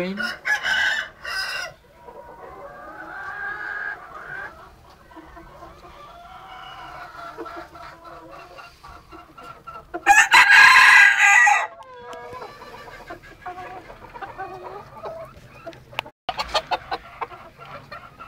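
Chickens clucking in a pen, with a rooster crowing about ten seconds in, one call about a second and a half long and the loudest sound heard.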